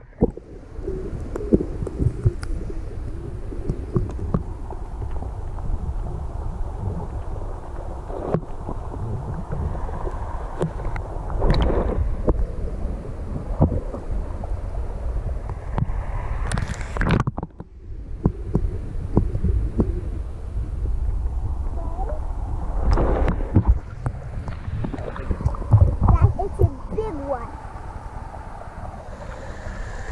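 Muffled water sloshing and gurgling around a waterproof action camera held in and just under the surface of a shallow river, with scattered knocks and handling bumps. There is a short lull about seventeen seconds in.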